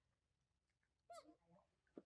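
A single short, faint squeak from a young macaque about a second in, its pitch falling quickly, with a faint click near the end.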